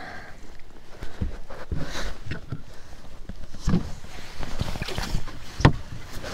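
Clunks and knocks of a landing net, rod and gear handled on a bass boat's deck as a caught bass is brought aboard, a handful of separate sharp knocks with the loudest near the end.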